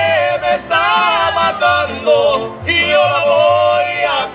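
Live mariachi band: two male singers in harmony over violins and guitars, with a pulsing bass line keeping a steady beat.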